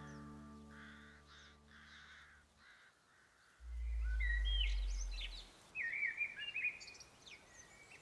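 A held low musical chord fades away over the first two seconds or so. About three and a half seconds in comes a low rumble lasting about two seconds, the loudest sound here. Birds call and chirp outdoors from about four seconds in until about seven.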